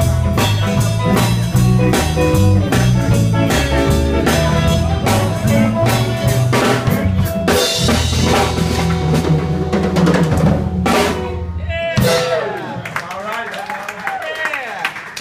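Live blues band, electric guitars with a drum kit, playing the close of a song with a steady beat; it ends on a run of drum hits about twelve seconds in, and the full sound cuts off, leaving quieter, wavering sounds.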